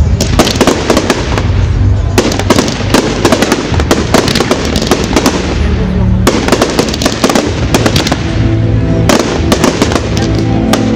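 Fireworks display: a dense, unbroken run of bangs and crackles from shells going off in quick succession, over music set to the show. The music's sustained notes come through more clearly near the end.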